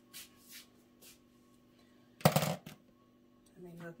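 Craft supplies being handled on a table: a few faint rustles, then one short, loud burst of rustling and clatter about two seconds in.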